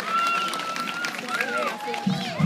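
Crowd chatter dominated by children's high voices; one voice holds a long high call for about a second at the start, followed by shorter rising and falling calls.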